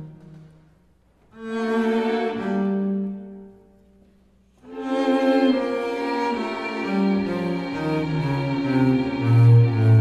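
A jazz big band with a computer-played virtual string orchestra over loudspeakers. There are two short sustained phrases, each followed by a brief near-silent pause. From about halfway through, sustained full-ensemble chords hold, and low bass notes come in towards the end.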